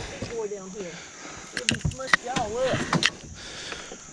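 A faint voice speaking in short snatches, with a few sharp knocks in between.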